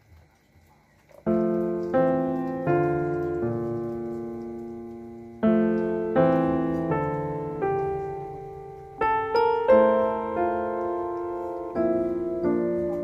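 Slow piano music, starting about a second in: notes and chords struck one after another, each fading away before the next.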